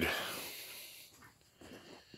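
A man's breath out just after speaking, a soft hiss that fades away over about a second, then near quiet.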